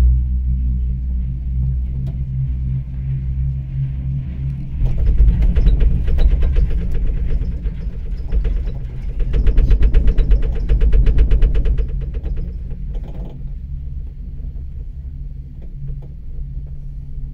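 Aerial cable car cabin running along its rope with a steady low hum. From about five seconds in, a fast, even rattling clatter lasts about eight seconds and then stops abruptly, as the cabin's wheels run over a support tower's roller train.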